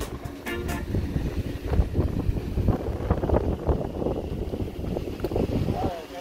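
Wind buffeting the microphone, a rough, uneven low rumble. Guitar background music carries on for the first second or so and then stops.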